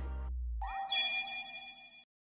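Bright chime sound effect, a cluster of high ringing tones, starting about half a second in and fading away. Under its start, a low hum cuts off.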